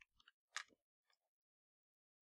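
Near silence with a few faint short clicks in the first second, the sharpest about half a second in.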